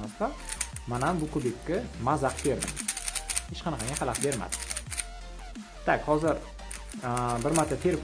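A YJ Zhilong mini 3x3 magnetic speed cube being scrambled: quick clicking of its layers turning, dense through the first five seconds or so. A singing voice in background music runs throughout and is the louder sound.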